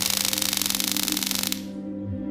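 Handheld "Power 200" stun gun firing its electric arc between the prongs: a loud, rapid electric crackle lasting about a second and a half, then cutting off suddenly. Film music plays underneath.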